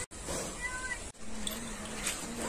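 One short, high-pitched, meow-like animal cry about half a second in, over steady outdoor background noise. The sound drops out briefly at the start and again just after a second.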